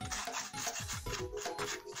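Background music with a steady beat, over the scratchy rubbing of a wooden stick spreading glue across paper fiber.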